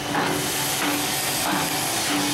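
Vincent CP-4 screw press running while dewatering a polymer-and-water mix: a steady hum from the drive, with a loud hiss over it that brightens about a quarter second in.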